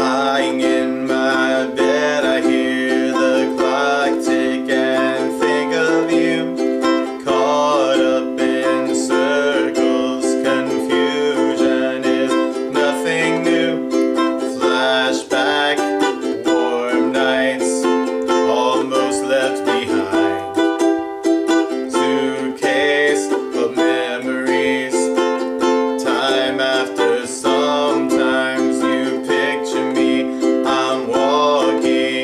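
Ukulele strummed in a steady rhythm in the key of C. It alternates F and C chords, then moves to F, G, Em and F chords about halfway through.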